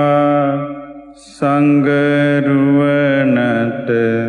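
Sinhala Buddhist devotional chant taking refuge in the Triple Gem, sung slowly in long, drawn-out held notes. One line fades out in the first second, and the next begins with a breathy 's' about a second and a half in.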